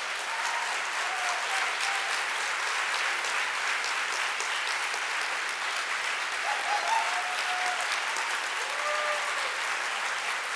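Large audience giving a standing ovation: steady, dense applause, with a few short cheers rising above the clapping now and then.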